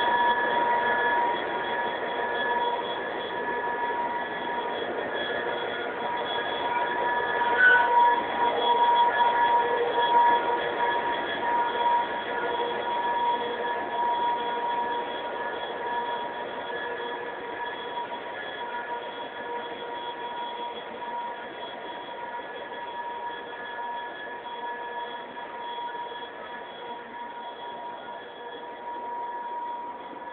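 Diesel locomotive running, with a steady high whine over engine noise that slowly grows quieter. There is a brief louder moment about eight seconds in.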